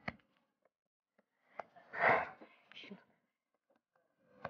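A person's brief breathy vocal sound, whisper- or gasp-like, about halfway through, with a short click at the start and a few faint ticks around it.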